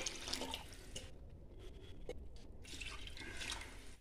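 Water poured into a pot of rice and mutton gravy, faint: the cooking water being added to the rice for biryani.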